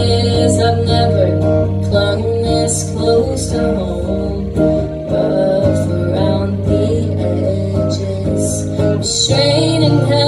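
Live solo electric guitar played through an amplifier: strummed chords over steady low notes, with the chord changing about nine seconds in.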